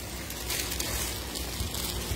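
Clear plastic bags of clothing rustling and crinkling as they are handled.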